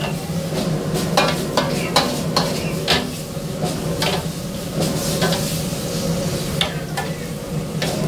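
Metal spatula scraping and knocking against a wok as food is stir-fried and sizzles, over a steady low hum. The scrapes and knocks come irregularly, about one or two a second.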